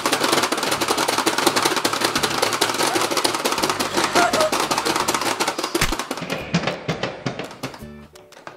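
Rapid plastic clicking from both players hammering the buttons of a Pie Face Showdown game, a dense run of clicks that thins out and stops shortly before the end, over background music.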